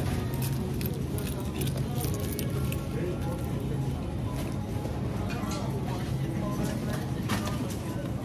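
Supermarket ambience: background store music and indistinct voices of other shoppers over a steady low hum from the refrigerated freezer cases, with a few light handling clicks.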